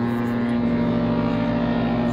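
An MSC cruise ship's horn sounding one long, steady blast on a single low note.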